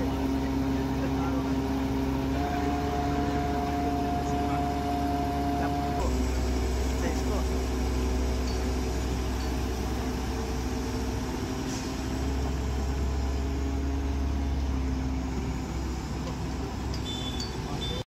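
A steady engine hum with a few held tones over a low rumble, which shift in pitch about six seconds in.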